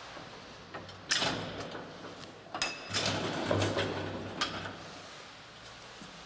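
Folding metal scissor gate of an old ASEA elevator car being drawn shut by hand: a sharp clack about a second in, a ringing metal clank at about two and a half seconds, then a second or so of rattling over a low hum.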